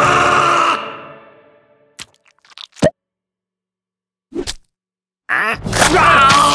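Cartoon voice and sound effects: a loud, ghostly scream that fades away over about a second, a few brief soft sounds amid near silence, then a sudden loud cry bursting in near the end.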